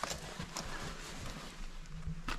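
A few light knocks and rustling from someone moving about inside a minivan, most of them in the first second.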